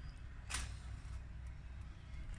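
A faint single click about half a second in, from an improvised push-button wired into a car's steering wheel being pressed, over a low steady hum.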